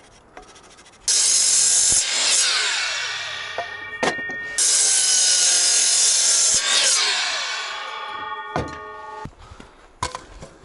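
DeWalt miter saw cutting a wooden board twice: each time the motor starts suddenly and runs through the cut for one to two seconds, then the blade winds down with a falling whine over a couple of seconds. A sharp knock comes during each wind-down.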